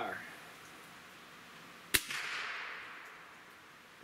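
Gamo Swarm Magnum Gen3i .177 break-barrel air rifle firing a single shot about two seconds in: one sharp crack with a tail that fades over about two seconds. The chronograph clocks the 7.8-grain Gamo Red Fire pellet at 1,159 feet per second.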